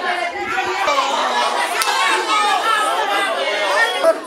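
Crowd of spectators chattering, with several voices overlapping at once.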